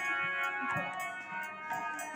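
Harmonium holding a steady chord, with a few soft khol drum strokes and light ticking, in a quiet instrumental stretch of a devotional kirtan.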